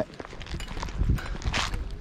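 Footsteps scuffing on gravelly dirt, with close handling knocks and clothing rustle against a body-worn camera, and a short rustling hiss about a second and a half in.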